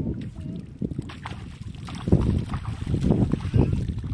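Splashing in shallow river water, with wind rumbling on the microphone; the splashing gets louder about halfway through.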